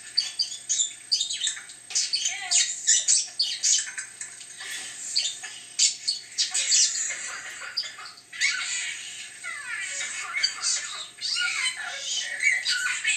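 Budgerigar warbling and chattering: a rapid, unbroken run of short high chirps and squawks, with a brief lull about eight seconds in.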